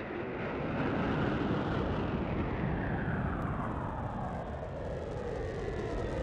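A jet-like whooshing roar that opens a slowed, reverb-heavy synth-pop track, with a sweep falling slowly in pitch and no beat yet.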